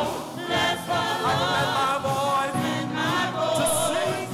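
Small gospel praise team singing together into microphones, with keyboard accompaniment; the voices hold long notes with vibrato in short phrases.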